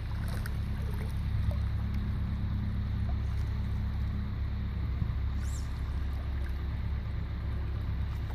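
Steady low rumble of wind buffeting the microphone at the creek edge.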